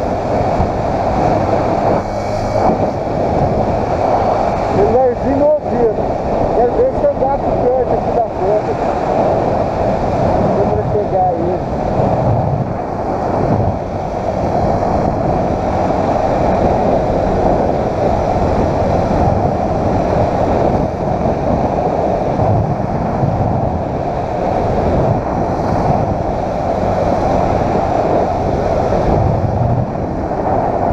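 Steady wind rush on the microphone of a moving motorcycle, with the bike's engine and road noise running underneath. A few short squeaky pitch glides come through between about five and eight seconds in.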